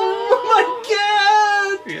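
A man's voice in a drawn-out, high mock scream of "oh!", held on one pitch, breaking off briefly about half a second in and then rising again for about a second before stopping near the end.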